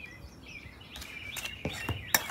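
Faint birds chirping in the background, with a few light clicks and knocks in the second half as a utensil and the can are handled on the table.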